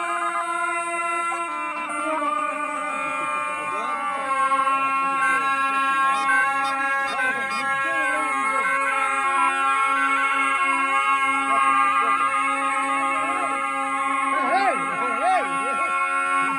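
Three surle, Albanian folk shawms, playing together: a steady reedy drone held underneath while an ornamented, wavering melody runs above it.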